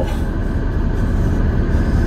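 Steady low rumble and hiss of a minivan's cabin, with no distinct events.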